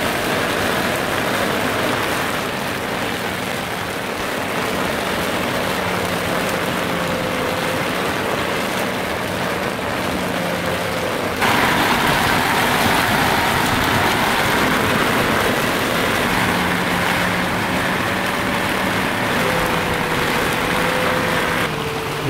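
Torrential rain pouring on the sailboat, heard from inside the cabin as a steady hiss that turns louder about halfway through, with a faint wavering hum beneath it.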